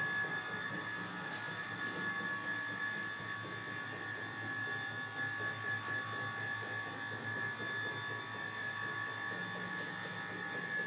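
Flow 2 curved stairlift's drive running steadily as the carriage climbs its rail, an even high whine over a low hum.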